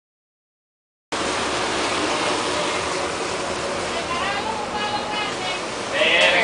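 Steady rushing noise aboard a sport-fishing boat, cutting in suddenly about a second in after silence, with faint voices in the middle.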